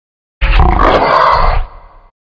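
A boy's loud, distorted yell or roar. It starts a moment in, holds for just over a second, then falls away.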